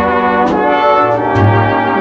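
Orchestral accompaniment led by brass, playing a sustained instrumental fill between sung lines, with the notes changing every half second or so over a few light beats.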